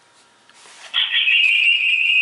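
Acoustic feedback from a Nokia 100 mobile phone switched to speakerphone during a call with a second phone close by: a steady high-pitched whistle that starts about a second in and holds.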